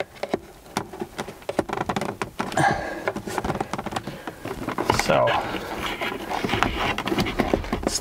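A plastic trim panel tool prying at the edge of a BMW E28 instrument cluster, with irregular clicks, taps and scrapes of plastic as the cluster is worked loose from the dashboard.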